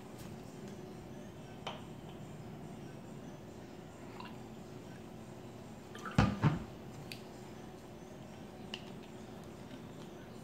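Water poured from a plastic water bottle into a small test vial, with faint handling clicks and two sharp knocks close together about six seconds in.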